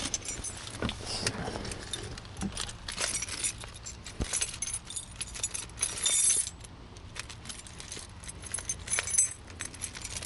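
A bunch of keys jangling, with scattered light clicks and knocks, while someone handles them climbing into a vehicle's driver seat.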